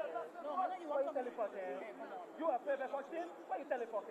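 Overlapping voices of several people talking and calling out at once, in short broken phrases.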